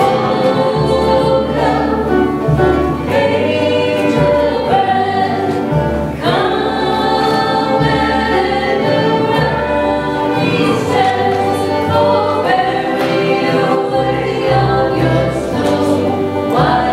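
A bluegrass band playing and singing: fiddle, acoustic guitar, banjo and upright bass under voices singing together.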